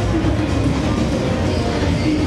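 Carnival float's confetti blower shooting a jet of confetti, a steady loud rumble over music playing from the float.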